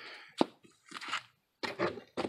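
Cardboard comic-book mailer being handled and folded: soft scraping and crinkling of cardboard, with one sharp tap a little under half a second in.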